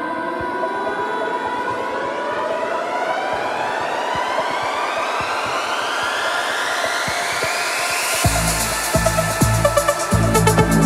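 Trance track at a build-up: a synth sweep rises steadily in pitch for about eight seconds over held pad chords. Then, about eight seconds in, the bass and beat drop back in.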